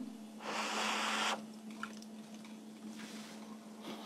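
A person blowing once on a spoonful of hot food to cool it, a breathy blow lasting about a second; afterwards only a faint steady hum.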